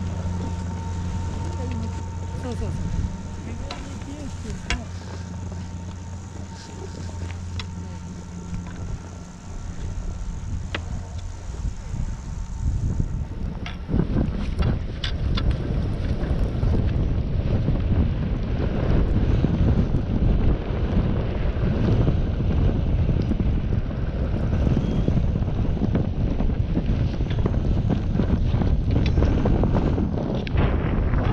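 For the first dozen seconds a steady low hum with a few faint clicks. About 13 seconds in it gives way to a loud, continuous rush of wind over the GoPro action camera's microphone, mixed with the noise of skis running over snow as the skier descends.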